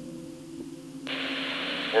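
Two-way radio static: the hiss of a handheld Motorola radio opens abruptly about a second in as an incoming transmission keys up, just before a voice comes through. A low steady hum runs underneath.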